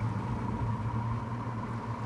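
Boat's outboard motor running at low speed in gear, a steady low hum, with sea and wind noise.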